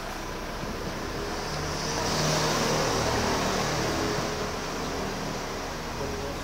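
A motor vehicle passing on a nearby street: engine and tyre noise swells over a couple of seconds, peaks in the middle and fades, over a steady background of city traffic.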